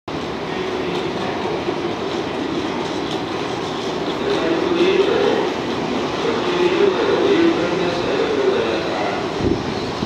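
Electric trains at a station platform: a steady rumble and hiss from a train standing alongside while another approaches, with a pitched tone that wavers up and down in the middle of the stretch.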